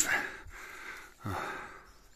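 A person breathing hard close to the microphone while climbing on foot, with one clear breath about a second in.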